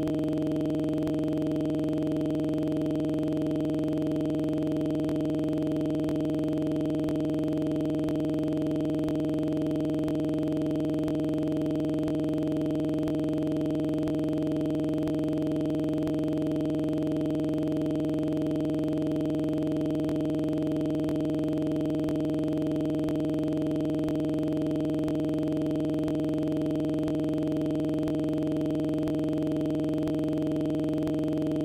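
A continuous electronic tone, an unchanging buzz built of several fixed pitches, standing in place of the studio sound: an audio fault has replaced the programme audio.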